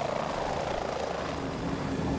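Helicopter in flight: steady rotor and engine noise with a fast, even flutter.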